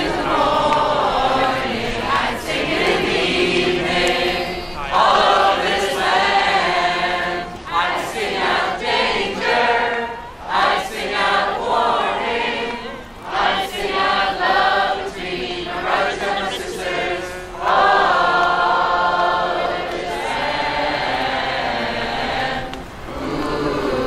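A crowd of people singing together without accompaniment, in phrases broken by short pauses.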